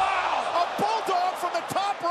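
Wrestling broadcast audio: a man's excited commentary over the steady noise of a stadium crowd.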